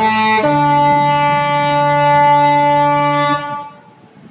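The Disney Fantasy cruise ship's musical horn playing the end of a tune: a note change just under half a second in, then one long held note that stops about three and a half seconds in and fades away in an echo.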